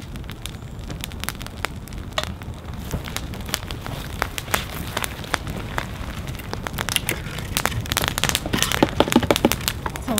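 Wood campfire crackling and popping with frequent sharp snaps. Near the end the clicks grow denser as dry sticks rattle and knock together, gathered by hand from a brush pile.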